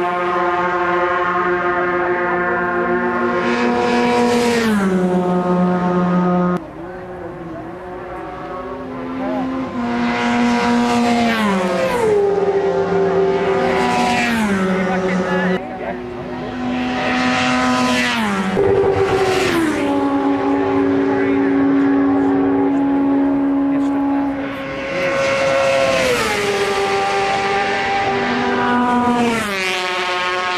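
Racing motorcycles passing at full speed one after another, high-revving engines each dropping sharply in pitch as the bike goes by, about six passes in all.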